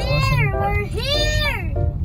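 Two long meow-like cries, each rising and then falling in pitch, over background music and a steady low rumble.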